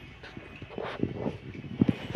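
Small dog eating rice mixed with fish from a stainless steel bowl: irregular chewing smacks and clicks, louder in the second half.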